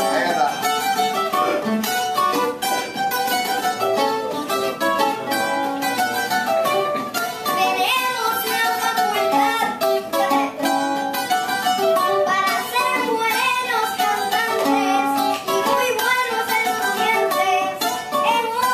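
Acoustic guitar played live, a quick picked melody over chords with notes changing several times a second.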